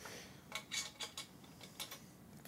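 Trumpet piston valve being taken out of its valve casing: a short run of light metallic clicks and taps, with a brief rustle at the start.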